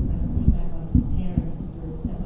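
A muffled voice through a microphone, with repeated low thumps about twice a second.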